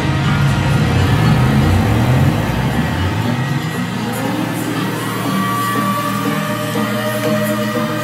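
Live electronic dance music played over a club PA. The deep bass drops out about three seconds in, and a rising tone climbs over the remaining beat before settling into a held note.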